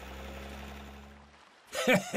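Cartoon car engine sound effect: a low, steady engine drone that fades away over about a second and a half, over a faint hiss. A short bit of voice comes in near the end.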